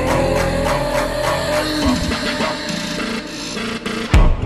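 Background music with sustained tones.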